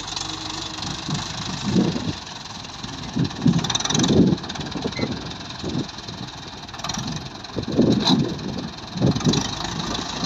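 Ursus C-360 tractor's diesel engine running under load while towing a stuck tractor, swelling and easing several times.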